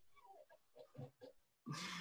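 Near silence, with a few faint short vocal noises and a breath drawn near the end, just before speaking.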